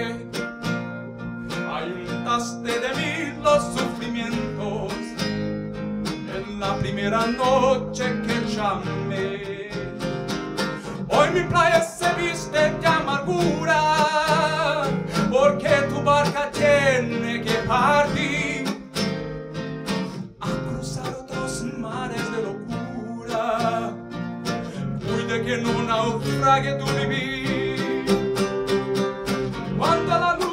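A man singing live to his own classical guitar, which is strummed and picked throughout.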